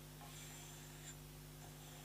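Faint rubbing of fingers sliding along the aluminium outer barrel of a Wells MB08 gel blaster, over a steady low hum.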